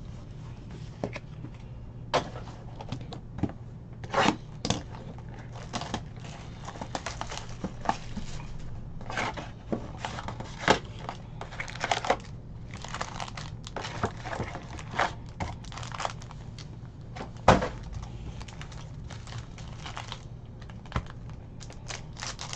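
Cardboard trading-card box being opened and handled, with scattered taps and clicks and the crinkling of foil-wrapped card packs, busiest in the middle. A steady low hum runs underneath.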